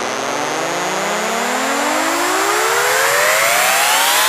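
Build-up in an electronic dance track: synth tones glide steadily upward in pitch over a bright noise wash, with no beat, slowly swelling louder toward the drop.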